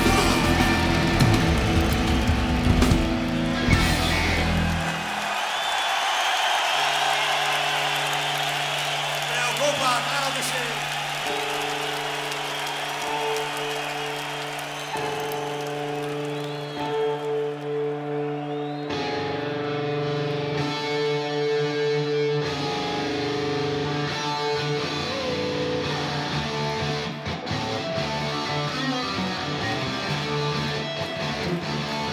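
Rock band with drums and electric guitars playing the last bars of a song, which stops sharply about five seconds in, followed by a crowd cheering. A guitar then holds long sustained notes and starts a slow, quiet intro to the next song.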